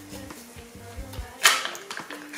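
A sheet-mask sachet being pulled open, with one sharp tearing rip about a second and a half in, over quiet background music.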